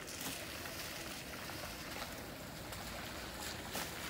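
Leafy weeds and stalks rustling and crackling as they are pulled up and torn out by hand, a few sharp snaps scattered through, over a steady background hiss.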